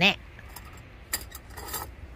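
A sharp light clink a little over a second in, then a short dry scraping rustle of small hard pieces being handled.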